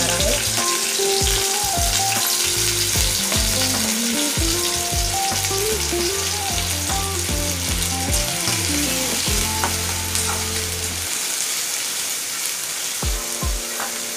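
Chopped onions sizzling steadily as they fry in hot oil in a kadhai, just tipped in from a plate.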